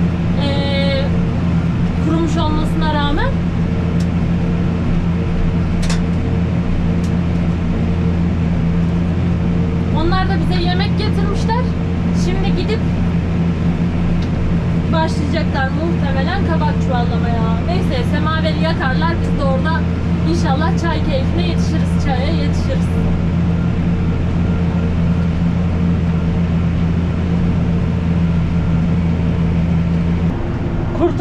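Tractor engine running steadily under load, heard from inside the closed cab, while it pulls a stalk shredder through a harvested sunflower field.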